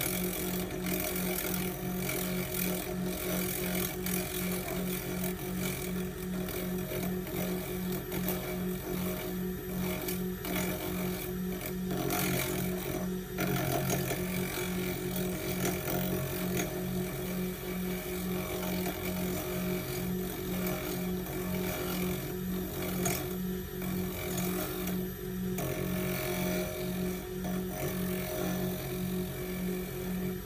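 Turncrafter lathe motor running steadily, its hum pulsing evenly about three times a second.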